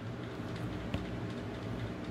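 Light handling of a plastic action figure and its toy gun, with one faint click about a second in, over a steady low hum.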